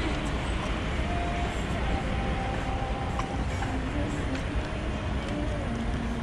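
Steady traffic noise from a wide city road, with wind rumbling on the microphone and faint voices in the background.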